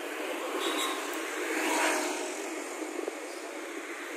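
Outdoor street traffic noise, with a passing vehicle that swells to its loudest about two seconds in and then fades.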